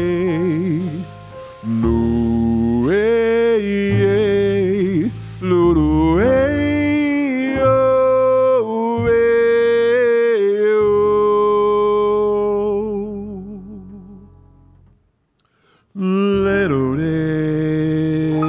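A male voice sings wordless, drawn-out jazz notes, some with a wavering vibrato, over an upright double bass. Both fade away about 13 seconds in, leaving a second of near silence, then come back in together about 16 seconds in.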